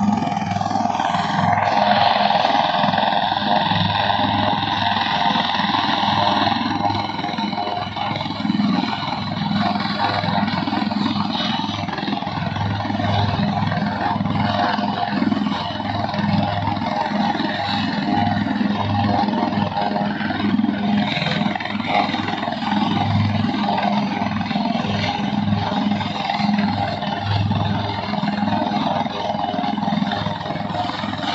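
HAL Dhruv twin-engine helicopter running on the ground with its main rotor turning: a steady turbine whine over the low pulsing of the rotor.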